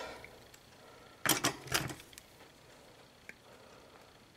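Small handling sounds at a workbench: two short rustling noises just over a second in, then a faint click near the end.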